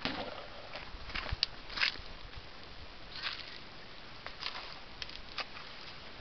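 Irregular footsteps scuffing and rustling on dry ground and leaf litter, with a few sharp clicks, the loudest about a second and a half in.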